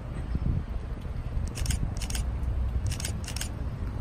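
Wind rumbling on the microphone, with four short, high, scratchy snips in two pairs near the middle.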